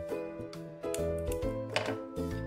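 Background instrumental music, with held notes over a bass line that changes every half second or so.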